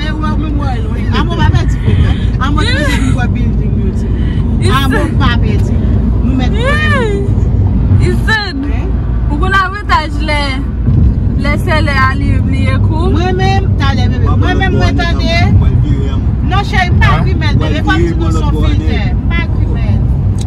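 Steady low rumble of road and engine noise inside a car driving on a highway, with a person's voice going on over it almost the whole time.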